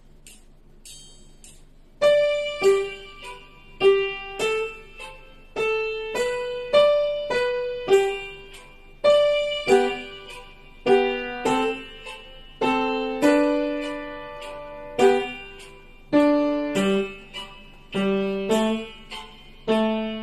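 Yamaha upright piano playing a slow, simple melody of mostly single notes. Each note is struck and rings away, and the playing starts about two seconds in after a few faint ticks.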